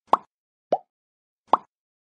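Three short cartoon pop sound effects, each under a fifth of a second and spaced well under a second apart, the middle one lower with a quick upward slide. These are the pops of a subscribe end-card animation as its like, subscribe and bell buttons appear.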